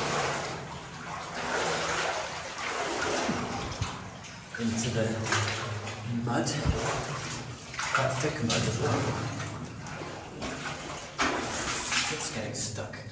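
Footsteps wading through shallow muddy water along a flooded mine passage, a run of irregular splashes and sloshes.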